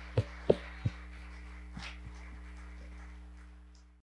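A few scattered hand claps, the tail end of applause, over a steady electrical mains hum, all fading out near the end.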